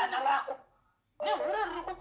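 A woman's voice laughing and talking, broken by a dead-silent gap of about half a second near the middle.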